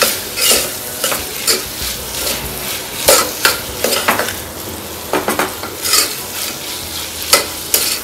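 Green peas and onion frying in hot oil in a pressure cooker, sizzling steadily, while a spatula stirs and scrapes across the bottom of the pot in irregular strokes.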